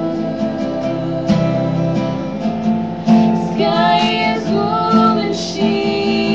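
Acoustic guitar strummed under female voices singing, a slow song with long held notes.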